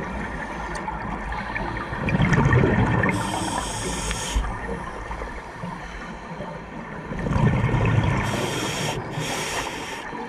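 Scuba regulator breathing heard underwater: twice a burst of exhaled bubbles rumbling, each followed by a high-pitched hiss as the next breath is drawn through the regulator.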